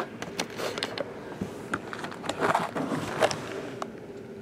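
A shrink-wrapped trading card box being picked up and handled: scattered light clicks and brief rustles of its cellophane wrap.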